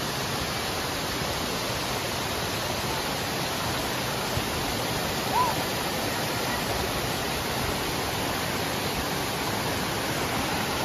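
Steady rush of a waterfall and the rocky stream at its foot, unbroken throughout.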